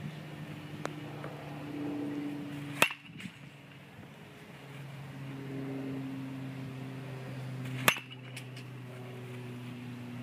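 Two sharp pings of a metal baseball bat hitting pitched balls, about five seconds apart, over a steady low hum.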